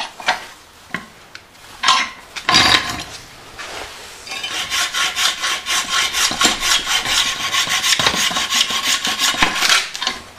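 Hacksaw cutting through a plastic drain fitting held in a bench vise, in quick, even back-and-forth strokes that start about four seconds in and keep going. The fitting is being trimmed down so it sits flush against the tray bottom. A few loud knocks come before the sawing begins.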